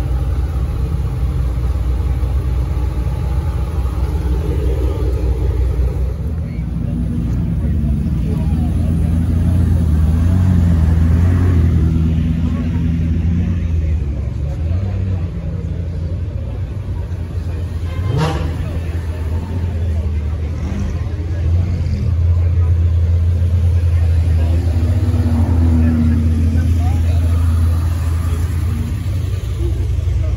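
Supercar engines, a Pagani Huayra and then a Lamborghini Huracán, running at low speed with a deep, steady rumble as they creep past. The rumble swells twice, and there is one quick rising rev about midway. Crowd voices sit underneath.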